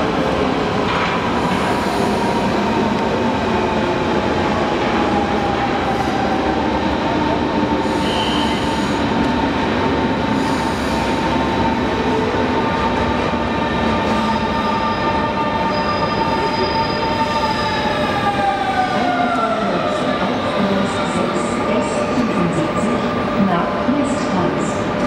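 Electric S-Bahn train running with a steady motor whine over the noise of the wheels. The whine falls in pitch over a few seconds near the end as the train slows.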